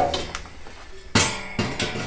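Sheet-metal furnace door panel being lifted off the cabinet and set down. It gives a sharp metallic clank with a short ringing rattle a little over a second in, then a second, lighter clatter.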